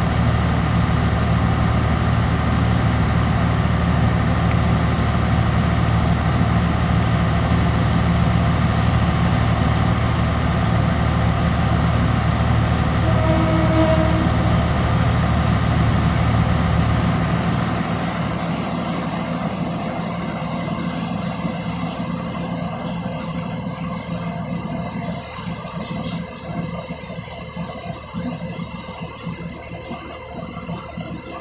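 Diesel engine of a stopped passenger train idling with a steady low hum. The hum drops noticeably quieter about 17 seconds in.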